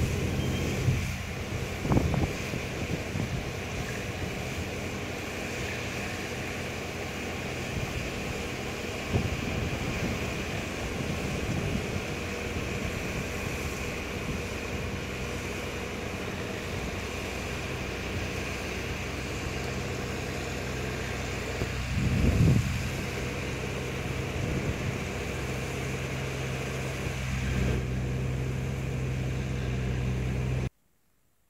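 Steady low hum under a constant outdoor hiss, with a few dull bumps on the microphone about two seconds in, nine seconds in and around twenty-two seconds.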